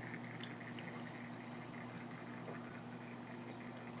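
Quiet room tone with a steady low electrical hum, and a couple of faint ticks.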